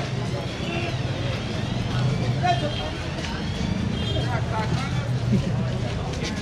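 Busy street ambience: scattered chatter of passers-by over a steady low engine hum from traffic.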